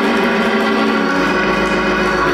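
Church organ music playing sustained chords, with a low bass note coming in a little past halfway.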